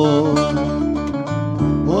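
Live Greek folk music in a short instrumental gap between sung lines: plucked strings, including an acoustic guitar, play on under a held melody note, and the singing voice comes back in near the end.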